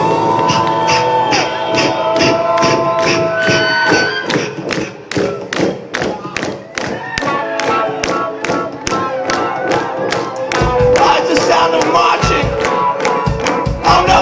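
Live rock-and-soul band: a steady clapping beat of about four claps a second, with held and sliding vocal and horn notes over it. About ten and a half seconds in, the bass and drums of the full band come in.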